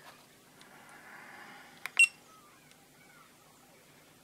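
FNIRSI LCR-P1 component tester giving one short, high beep about two seconds in, just after a light click of its TEST button, as it starts testing a transistor. Faint handling noise comes before it.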